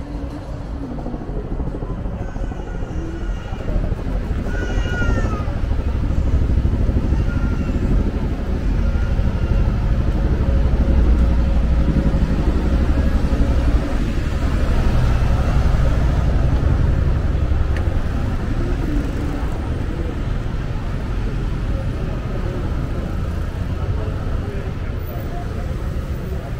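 Busy high-street traffic: a steady low engine rumble from passing double-decker buses and cars that swells through the middle and then eases, with passers-by's voices in the background.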